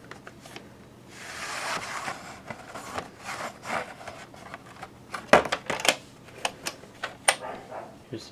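A VHS cassette being slid out of its cardboard sleeve, a rubbing scrape about a second in. It is followed by a series of sharp plastic clicks and knocks as the cassette is handled, the loudest about halfway through.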